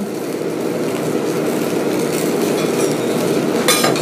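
Steady background noise of an okonomiyaki shop kitchen at the griddle, with a brief sharp clatter near the end.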